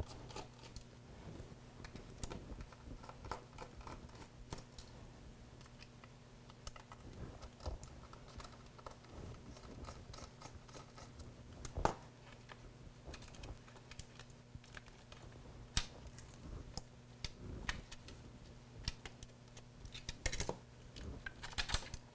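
Plastic battery holder being pried and pushed out of a small device's case by hand: scattered light plastic clicks and scrapes, a sharper click about twelve seconds in and a cluster of clicks near the end. A low steady hum runs underneath.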